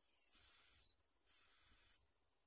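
Bar-winged prinia nestlings begging with gaping mouths. Their high, hissy calls come as two short bursts, each around half a second long: the first about a third of a second in, the second just past the middle.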